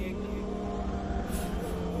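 Steady low background drone of the devotional recitation's sound bed, held without a break between recited lines, with a brief hiss a little past halfway.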